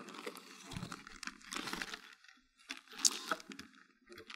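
Faint handling noise of a water softener's plastic control valve being moved and set on its tank: irregular rustling and crinkling of a plastic parts bag with light plastic knocks, and one sharper knock about three seconds in.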